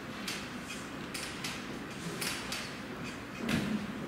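Gymnastics bar and its steel tension cables creaking and clanking as a gymnast swings circles around the bar, heard as several short, sharp sounds, with a louder knock about three and a half seconds in.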